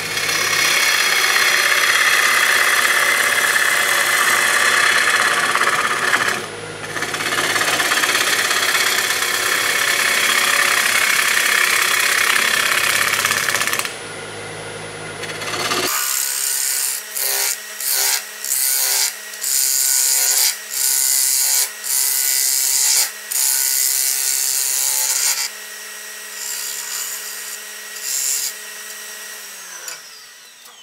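Wood lathe spinning a wet honey locust bowl blank at about a thousand rpm while a hand-held turning tool cuts the outside, a loud continuous scraping rush of cutting with a brief break about six seconds in and a pause near the middle. After that the cutting comes in a string of short passes with brief gaps between them, then lighter cuts, and near the end the lathe's hum drops in pitch as it slows.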